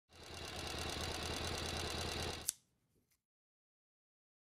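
Sewing machine running fast, a rapid even patter of stitches over a low motor hum, then stopping with a sharp click about two and a half seconds in.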